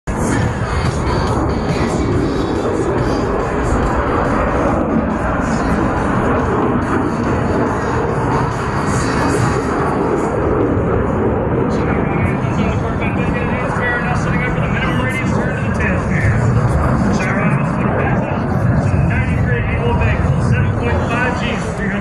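Music and a man's voice over outdoor public-address loudspeakers, mixed with crowd chatter and a steady low rushing noise. The voice grows clearer about halfway through.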